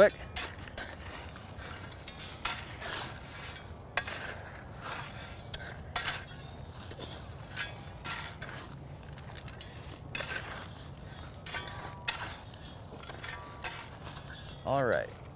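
Steel shovel blades scraping and scooping loose, clumpy soil and dropping it into a planting hole to backfill it. The scrapes and clinks come irregularly, a stroke every second or so.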